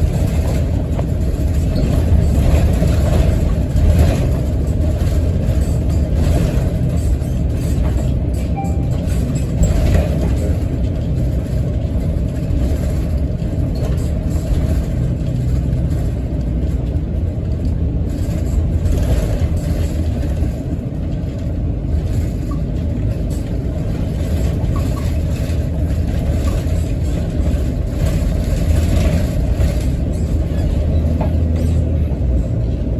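City bus running and driving along, heard from inside the passenger cabin: a steady low rumble of engine and road noise.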